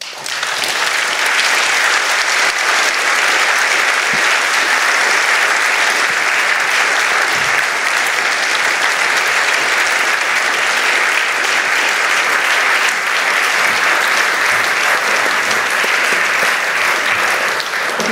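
A large audience in an auditorium applauding steadily.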